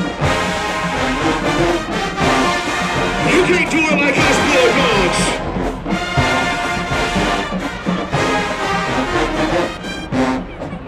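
A large marching band playing a tune on brass instruments, horns and trombones carrying the melody over a steady drum beat.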